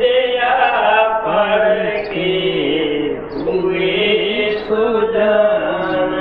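A man's voice chanting a devotional verse in long, held, wavering notes, one melodic line that bends up and down.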